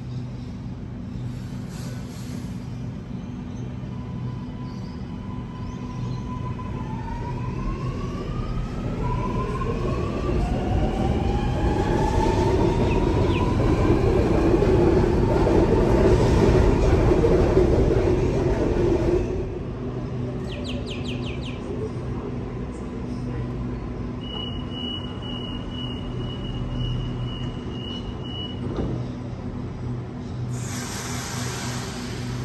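Sydney Metro Alstom Metropolis electric train moving at the platform: its motor whine glides upward in pitch while the running noise grows louder, then drops away abruptly about two-thirds of the way through. A few short high chimes follow, then a steady high electronic tone with beeps for about four seconds.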